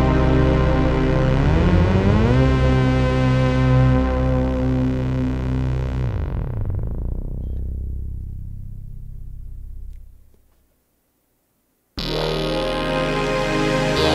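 Waldorf Blofeld synthesizer playing a sustained pad chord, its pitches wavering briefly about two seconds in. From about six seconds the sound grows darker and fades out over some four seconds, leaving a short silence. A new pad chord then comes in abruptly near the end.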